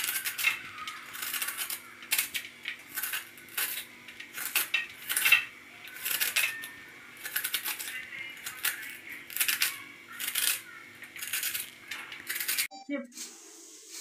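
Vegetable peeler scraping the ridged skin off a bitter gourd (karela) in short, quick strokes, about two a second, over a faint steady hum. The strokes stop abruptly near the end.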